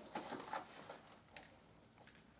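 Faint handling sounds of wet river clay being scooped out of a plastic tub by hand: a light click, then a few soft scrapes and squelches in the first half second and one more a little later.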